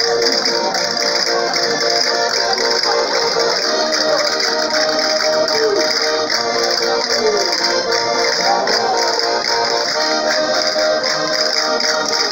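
Live band music playing for dancing, with a steady beat.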